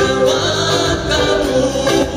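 Live band music played loud through stage speakers: strummed acoustic guitars and drums with group singing.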